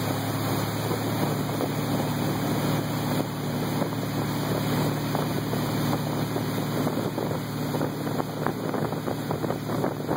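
Motorboat engine running steadily at towing speed, with wind buffeting the microphone and water rushing past. The wind gusts pick up in the last few seconds.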